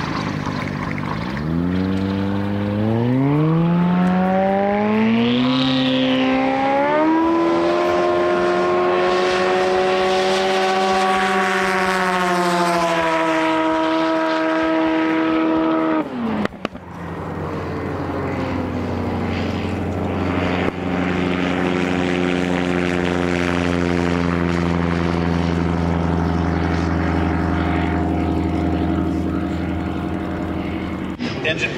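Light STOL taildragger's piston engine and propeller going to full power for a takeoff run, the pitch climbing steeply over several seconds and then holding high and steady. About halfway through the power is cut sharply and the pitch falls fast. After that the engine runs on at a lower, steady note.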